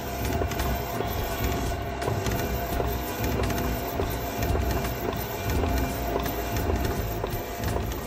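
Background music over a Craft Express DTF printer at work, its print head carriage shuttling back and forth with a run of light clicks.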